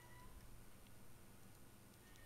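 Near silence: faint room tone, with a faint brief high tone right at the start.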